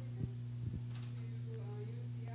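Steady electrical mains hum from the microphone and sound system, with two soft low thumps in the first second from the corded handheld microphone being moved. Faint voices sound in the background.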